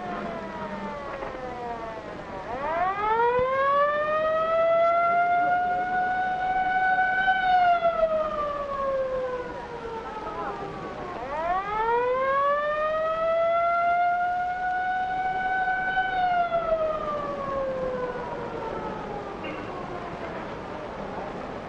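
A wailing siren in slow cycles: it falls away, then climbs over about five seconds to a peak, holds briefly and falls again, and does this a second time.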